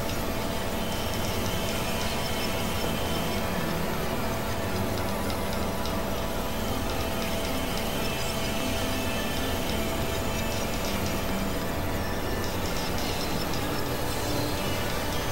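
Dense experimental electronic noise and drone music: layered steady synthesizer tones over a noisy rumble at an even level, with a fast run of short repeated chirps in the middle range for most of the stretch.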